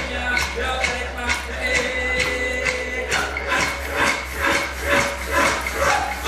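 Recorded traditional Aboriginal song played over a PA: a man singing over sharp, evenly spaced percussion beats. About halfway through, the beats quicken from about two to about four a second.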